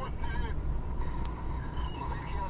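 Vehicle driving along a road: a steady low engine and road rumble, with a short wavering voice-like sound in the first half second and a single sharp click a little past the middle.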